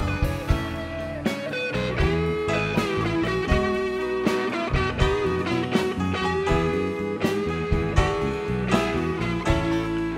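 A live soul band plays an instrumental passage: an electric guitar lead holds long, bending notes over drums, bass and piano.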